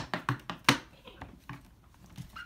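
Pokémon trading cards being handled on the floor: a quick run of sharp taps and clicks in the first second, then a few fainter ones.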